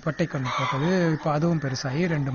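A man speaking, with a chicken calling among his words.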